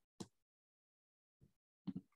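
Near silence, broken by a few brief faint clicks.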